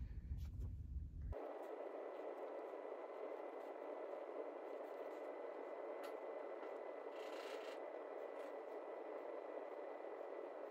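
Quiet, steady background hiss with a faint high steady tone, which cuts in abruptly about a second in after a short stretch of low rumble and handling noise. There are a few faint ticks, such as fingertip taps on a touchscreen.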